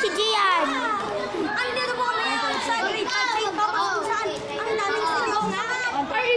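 Several children's voices chattering over one another, with no single clear speaker.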